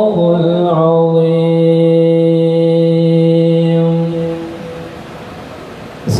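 A man's voice reciting the Quran in Arabic in a melodic chant, ending on one long held note that fades out about four and a half seconds in.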